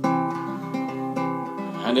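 Classical (nylon-string) guitar playing a steady strummed and picked chord pattern. A man's singing voice comes in near the end.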